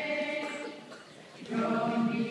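A choir singing: one phrase fades out early on, there is a brief lull, and the next phrase enters about one and a half seconds in on a held chord.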